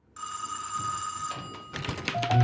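A bright, bell-like ring, such as a telephone's, sounds once for about a second and fades, followed near the end by a quick cluster of short knocks.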